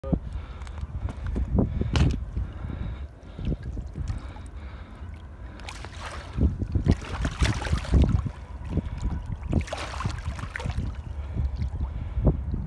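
Water sloshing and splashing as a large blue catfish is held at the surface and let go, its body and tail stirring the water in several splashes, with a steady low rumble underneath.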